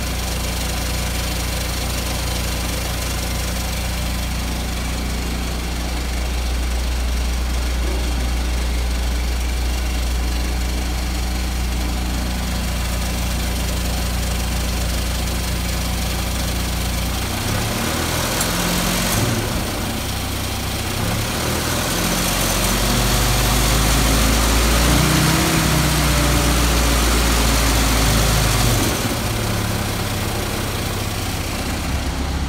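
Jeep CJ5 engine running, with new spark plugs and a new valve cover gasket. It idles steadily for the first half, then the revs are raised and varied from about 17 seconds in, running higher and louder before dropping back to idle near the end.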